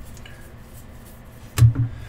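A short double thump about one and a half seconds in, over a low background, while a stack of trading cards is handled over the table.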